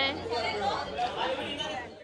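Background chatter of several people talking, with no single clear voice; it fades out near the end.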